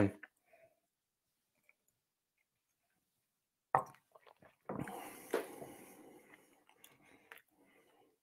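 A tulip tasting glass set down with a single clack on a wooden tray, then about a second and a half of soft, wet mouth sounds as a sip of rye whiskey is worked around the mouth.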